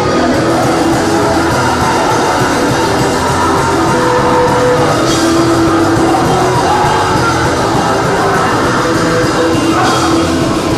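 Live punk rock band playing loud and steady, electric guitar to the fore, with singing.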